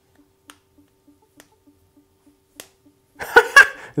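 Faint, regular ticking, about three a second. Near the end come two loud, sharp slaps a quarter second apart, from starch-dusted hands patting sticky mochi dough.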